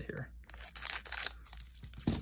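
Scissors cutting open the foil wrapper of a Magic: The Gathering collector booster pack, with the foil crinkling, in a few short rustling bursts about half a second in and again near the end.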